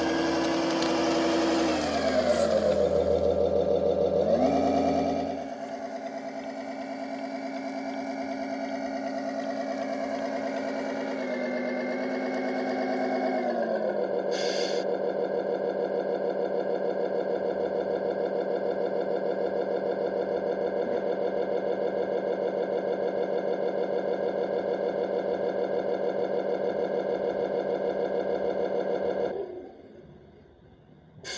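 Simulated diesel semi-truck engine sound from a DIY ESP32 sound controller, played through the RC truck's small speaker. The revs drop, climb and fall again twice, then settle to a steady idle with a short hiss. The sound cuts off suddenly near the end, as the engine is switched off.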